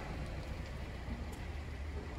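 Quiet outdoor background noise: a steady low rumble with no distinct events.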